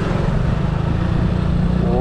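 Motorcycle engine running under light throttle with steady wind rush on the rider's microphone as the bike gathers a little speed. Speech starts right at the end.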